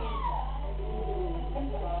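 Several people chattering in a room, opened by a high call that glides up and then falls, over a steady low electrical hum.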